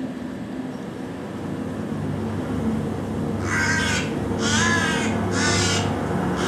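Crows cawing: three harsh caws about a second apart, starting a little past halfway, over a low steady hum.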